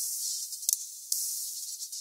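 Future bass track playing back with only its top band heard: a hissy high end with short, crisp percussion ticks and nothing in the lows or mids. One band of a multiband compressor is soloed while it is adjusted during mastering.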